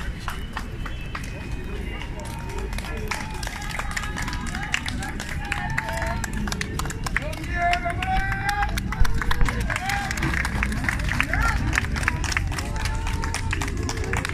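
Outdoor crowd of onlookers: mixed voices and calls with scattered hand claps, over a steady low rumble.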